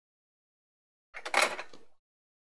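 Silence for about a second, then a brief rustle and clatter of a paintbrush and a wad of kitchen roll being handled and set down.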